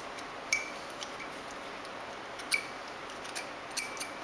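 A few sharp, light clicks, each with a brief high ring, from a small drilling tool and metal template being handled on a plastic model, over faint room noise. No drill is running.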